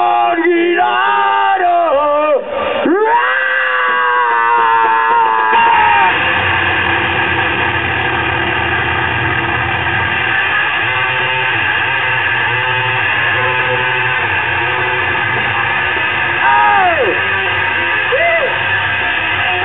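Live garage-rock band: drawn-out yelled vocals over electric guitar, then about six seconds in distorted electric guitar and bass settle into a loud sustained drone. Another yell rises and falls near the end.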